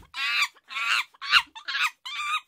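A quick run of short animal calls, about five in two seconds, each call bending in pitch.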